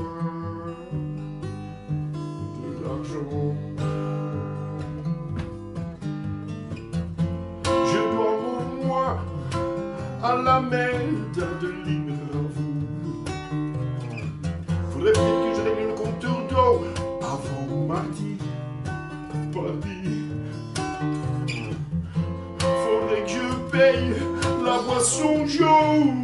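Acoustic guitar played with a steady alternating bass and picked chords, and a man singing over it in phrases.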